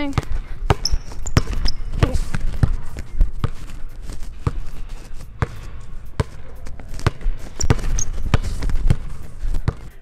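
Basketball dribbled on a hardwood gym floor, the bounces sharp and irregular, about one to two a second. A few short high sneaker squeaks come in the first couple of seconds and again about eight seconds in.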